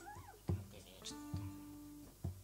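Live acoustic band music: a voice slides up and down on a note, then holds a steady note, over acoustic guitars, with bass drum beats twice.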